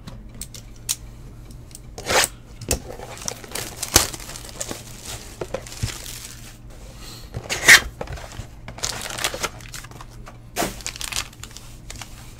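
Plastic shrink-wrap being torn and crumpled off sealed trading-card boxes by hand, in irregular rips and crinkles, the loudest rip about eight seconds in.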